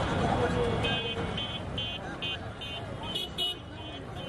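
Busy street-market hubbub of many voices. Over it, a rapid run of short, high electronic beeps, about two or three a second, starts about a second in.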